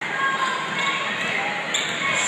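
Live basketball game in a large indoor hall: a steady murmur of crowd voices, with a ball being dribbled on the court.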